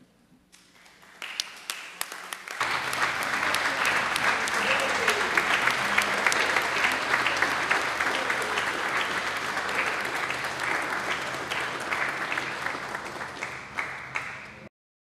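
Applause from a room full of people clapping, approving a bill by acclamation. It starts faintly about a second in, reaches full strength after about two and a half seconds, and then holds steady.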